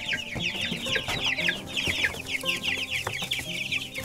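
A brood of young laying-hen chicks, about five weeks old, peeping all together: many short, falling chirps overlapping without a break.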